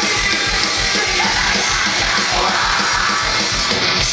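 Metalcore band playing live: distorted electric guitars and a steady, driving drum beat under screamed vocals.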